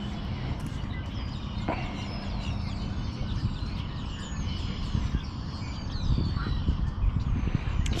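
Birds chirping, a string of short, falling high calls, over a low steady rumble. A low hum underneath stops about halfway through.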